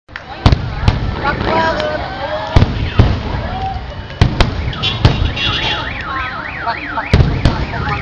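Aerial firework shells bursting with sharp bangs, about nine in quick succession, some in pairs. An alarm wails up and down several times a second behind them, plainly from about halfway.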